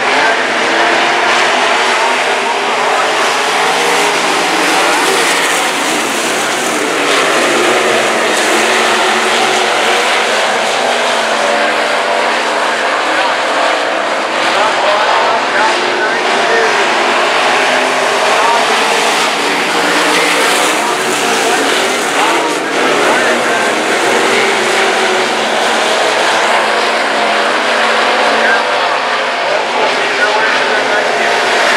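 A field of dirt-track stock cars racing, a continuous mix of engines whose pitch rises and falls as the cars go around the oval.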